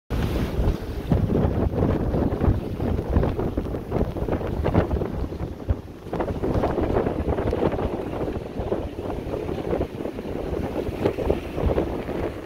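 Gusty wind of over 30 knots buffeting the microphone, in uneven rushes and blasts.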